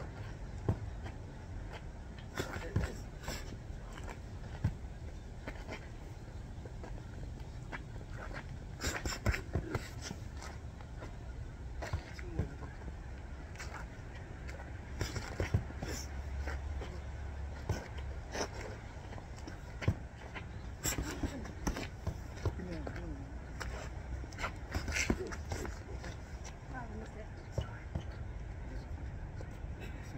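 Boxing gloves striking focus mitts in quick combinations of two to four sharp smacks, a burst every few seconds, over a steady low outdoor rumble.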